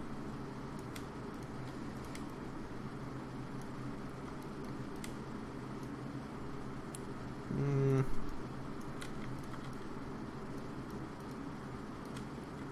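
Steady low room hum with a few faint, sparse computer-mouse clicks, and a man's short hummed "hmm" about two-thirds of the way through.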